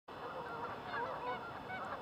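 A large flock of geese honking, many faint calls overlapping into a continuous chorus.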